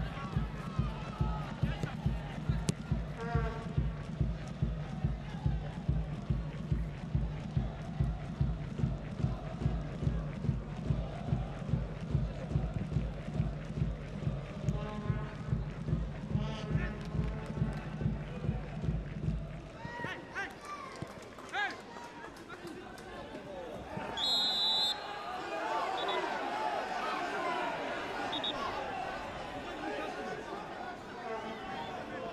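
Supporters' bass drum beating steadily, about two strokes a second, under crowd chanting, then stopping abruptly about two-thirds of the way through. After that comes a lighter crowd murmur and a short referee's whistle blast.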